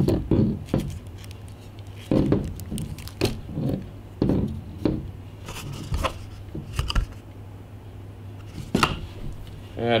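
Scattered plastic clicks and knocks from a hard plastic cigarette-lighter plug adapter being turned over and worked at by hand while looking for its fuse holder.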